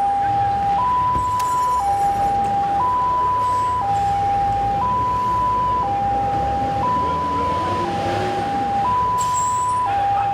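Police vehicle siren sounding a two-tone hi-lo wail, switching between a lower and a higher note about once a second, steady over street noise.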